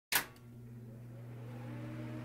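Sound design for an animated logo intro: a sharp hit at the very start, then a low steady hum with a few held tones that slowly swells, and a faint rising tone over it.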